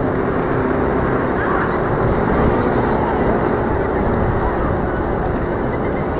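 Busy city street ambience: a steady wash of traffic noise with the voices of passers-by mixed in.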